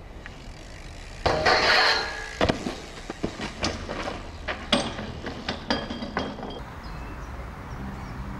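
BMX bike crash: a loud harsh scraping rush of tyres and bike about a second in, then a run of sharp metallic clinks and knocks as the rider goes down and the bike clatters on the pavement.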